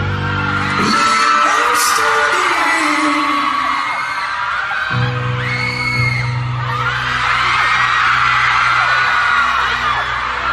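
Live band music in a concert hall with a crowd of fans screaming. The low accompaniment drops out about a second in and comes back about halfway through, while the high-pitched screaming goes on throughout.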